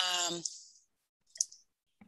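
A drawn-out spoken 'um' that trails off, then silence broken by one short click about a second and a half in.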